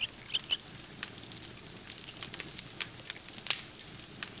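Faint campfire crackling sound effect: irregular small snaps and pops over a low hiss, a few sharper ones in the first half-second.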